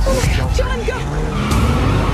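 Dense film-trailer sound mix: a heavy low rumble with music, and several short squeals that bend up and down in the first second.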